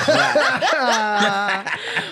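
A woman and a man laughing together, chuckling and snickering over each other.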